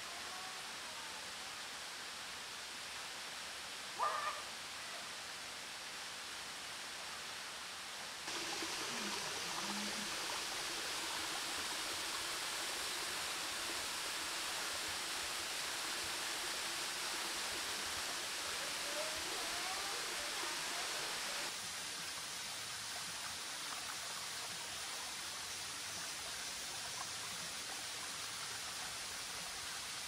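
Huai Tueng Thao waterfall, a thin cascade falling down a rock face, making a steady rushing hiss. The rush grows louder about eight seconds in and eases back a little after about twenty. A short, sharp sound comes about four seconds in.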